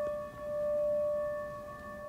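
A metal singing bowl ringing with a sustained, layered tone played with a wooden mallet. Its sound swells and fades in slow waves about once a second.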